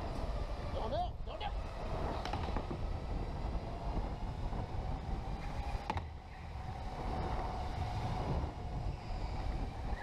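Electric go-kart running at speed: a steady motor whine over the rumble of the chassis and tyres on the track. The whine wavers about a second in, and there is a sharp click and a brief drop in loudness around six seconds.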